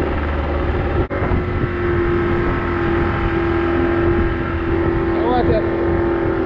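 Outboard motor driving an open wooden fishing boat along at a steady speed, with one short dropout in the sound about a second in.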